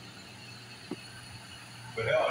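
Quiet room tone with a steady low hum and a single faint tick about halfway through.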